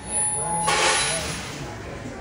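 A pause between sentences of a speech: faint voices in the room, with a breathy hiss lasting under a second about two-thirds of a second in.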